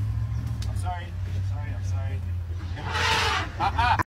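Safari vehicle's engine running steadily as it moves off, with a few short voice calls and a loud rushing noise about three seconds in.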